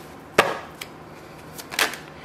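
Deck of oracle cards shuffled by hand: a sharp snap of cards a little under half a second in, a few fainter clicks, and a second snap near the end.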